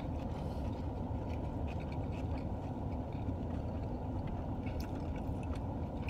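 Steady low rumble inside a car's cabin, with a few faint ticks.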